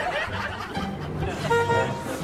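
A single short car horn toot, one steady note about a second and a half in, over light background music.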